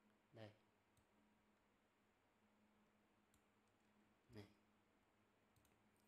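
Near silence: room tone with a few faint computer mouse clicks while documents are navigated on screen. A brief murmur from a voice comes about half a second in and again near four and a half seconds.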